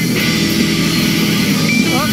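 Rock music with electric guitar playing steadily.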